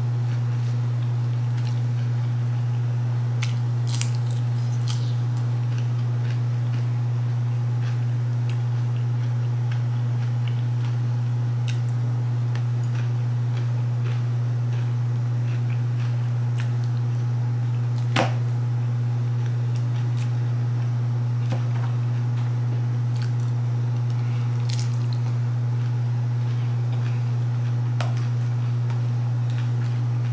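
A steady low hum runs throughout, with a few faint clicks and crunches of someone eating a salad. The sharpest click comes about 18 seconds in.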